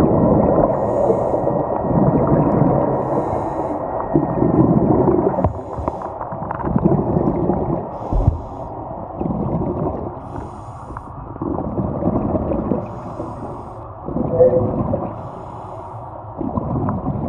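Scuba regulator breathing heard underwater through the camera housing: muffled bursts of exhaust bubbles, each a second or two long, repeating with short gaps, with faint hisses of inhalation between them.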